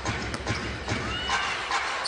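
Court sound of a live basketball game in an arena: a ball bouncing on the hardwood floor and sneakers squeaking briefly a little past a second in, over steady crowd noise.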